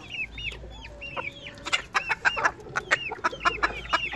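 Chickens calling: a quick run of short, high, arched cheeps repeating several times a second, mixed with a few sharp clicks in the second half.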